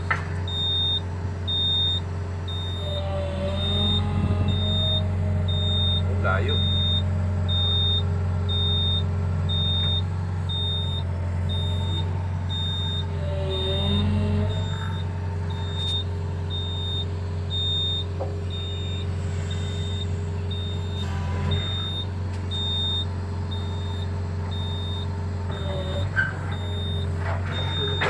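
Sumitomo long-arm excavator's diesel engine running steadily, working harder a few seconds in as the hydraulic boom is raised. A high-pitched warning beep from the machine repeats at a steady rhythm throughout.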